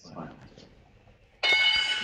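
A game-show chime sound effect: a bell-like ring of many steady tones that starts sharply about one and a half seconds in, marking a correct answer as the points are awarded.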